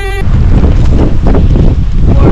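Wind buffeting the camera microphone: a loud, gusty low rumble. It takes over when music cuts off just after the start.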